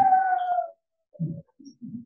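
A man's voice drawing out the end of a spoken question in one long, slightly falling tone that stops under a second in, followed by a few faint, short, low voice sounds.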